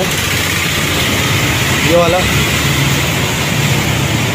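A vehicle engine idling steadily with a constant low hum and hiss, and a short spoken phrase about two seconds in.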